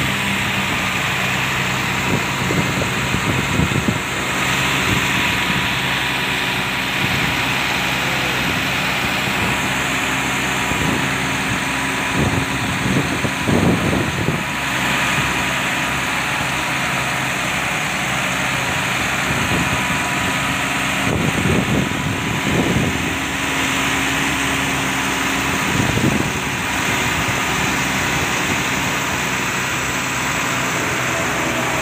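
Heavy truck's diesel engine idling steadily up close, with a few short louder surges of noise over it.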